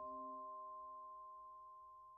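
A bell-like chime from the background music rings out and slowly fades: a few steady pitches that die away one by one.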